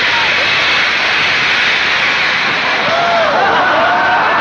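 Theatre audience of men applauding and cheering in a loud, continuous roar. Shouting and laughing voices stand out from it near the end.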